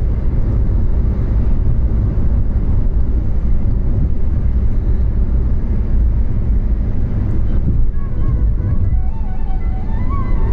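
Steady low rumble of road and engine noise inside a car's cabin while it cruises at highway speed. Near the end a melody of held, gliding notes comes in over the rumble.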